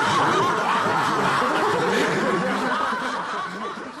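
Sitcom laugh track: a crowd of many voices laughing together. It starts abruptly, holds, then fades away toward the end.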